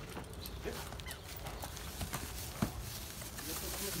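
A foal's hooves stepping on dirt and grass as it is led at a walk: irregular soft thuds and clicks over a steady low rumble.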